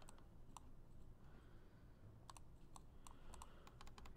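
Faint, scattered clicks of a computer mouse and keyboard over near silence, coming more often in the second half.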